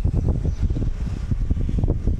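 Wind buffeting a phone's microphone: an uneven low rumble.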